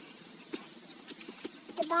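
Faint footsteps of a person walking, a few soft taps over a low hiss; a woman's voice starts again near the end.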